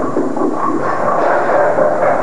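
Steady rumble and clatter of a bowling alley: balls rolling and pins crashing across the lanes, with the pins just hit on this lane clattering down as the pinsetter cycles.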